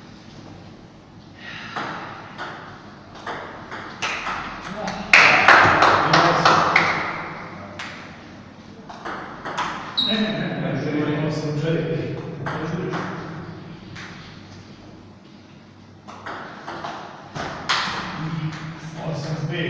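Table tennis ball clicking against bats and the table during rallies, with men's voices in between. The loudest thing is a noisy burst about five seconds in.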